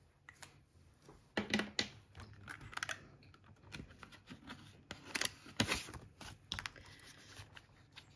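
A plastic binder pocket and paper banknotes being handled: scattered crinkles, rustles and sharp clicks, with the loudest strokes about a second and a half in and again between five and six seconds.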